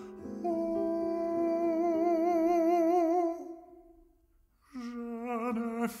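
Baritone voice singing a long held note with wide vibrato, fading out a little over three seconds in. After a near-silent pause of about a second, he begins the next sung phrase.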